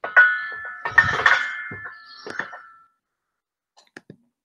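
Metal test-rig hardware (a steel shackle and fittings) being handled and knocked, giving two ringing metallic clanks about a second apart. The second is heavier, with a dull thump. The ringing fades over a couple of seconds, followed by a few faint clicks.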